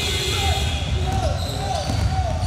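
A basketball being dribbled on a hardwood gym floor, with sneakers squeaking in short falling chirps and players' and onlookers' voices echoing in the hall.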